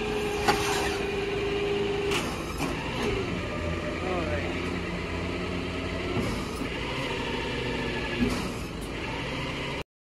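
Tow truck engine running with its hydraulic wheel-lift working, with a steady whine for about the first two seconds and a few clanks. The sound cuts off suddenly near the end.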